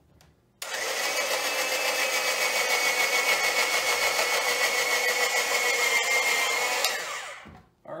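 Presto Salad Shooter electric slicer-shredder switched on just under a second in, its motor running steadily with a high whine as jalapeño strips are pushed through the hopper and diced. It is switched off about seven seconds in and winds down.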